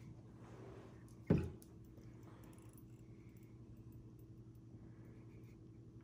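Handling of a glass liquor bottle and its screw cap: one sharp knock about a second in, then faint small handling sounds over a steady low hum.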